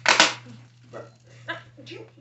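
Plastic wrapping and cardboard packaging being handled: a short, loud burst of rustling near the start, then quieter scattered handling sounds, with a few brief quiet bits of voice.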